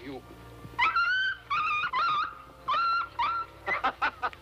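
A dog whining and yelping in a string of about five short, high-pitched cries, each rising at its start.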